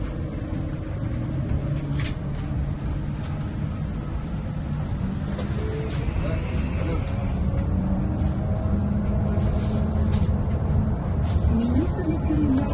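City bus heard from inside the cabin while it drives: a steady engine and road rumble, with a few brief hisses and rattles.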